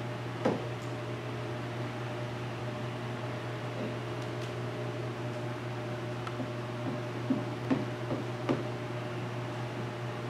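A steady machine hum, with a few brief squeaks of a turbo squeegee pushed across wet paint protection film on a car's hood, pressing out the soapy water: one about half a second in and four in quick succession near the end.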